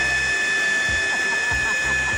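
Ryobi leaf blower running flat out, its fan giving one steady, high-pitched whine over a rush of air.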